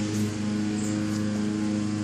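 A steady, unchanging low hum with several even overtones.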